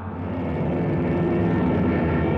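Propeller aircraft engines droning steadily, growing louder.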